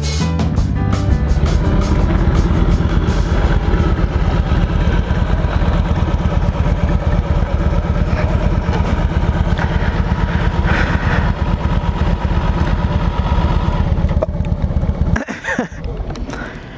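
Triumph Bonneville parallel-twin motorcycle engine running at low speed, heard close up from the bike itself, with a steady rapid pulse. The engine drops away sharply near the end as the bike comes to a stop.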